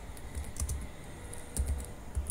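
Computer keyboard being typed on: a few soft, irregular keystrokes.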